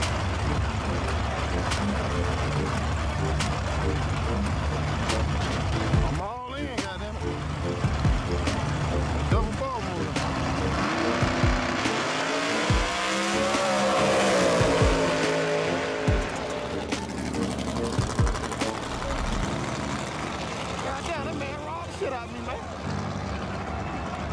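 Drag-race cars' engines revving at the starting line, then a launch, with an engine note that climbs and falls from about halfway through as a car accelerates down the strip. A crowd shouts throughout.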